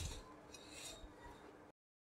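Faint handling sounds of fine sugar-and-flour strands of soan papdi being pulled apart by hand: a brief tap at the start, then soft, faint rustling. The sound cuts to dead silence shortly before the end.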